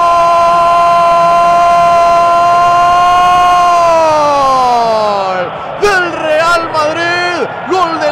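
A Spanish-language radio football commentator's long drawn-out "gol" cry: one held note that slides down in pitch about four seconds in and breaks off, then rapid excited shouting.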